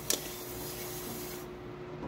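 A sponge scrubbing a frying pan at a kitchen sink, starting with one sharp knock of the pan. The faint rubbing eases off about one and a half seconds in, over a steady low hum.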